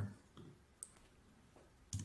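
Two faint clicks at a computer, one just under a second in and a sharper one near the end, as the user works the keyboard and mouse.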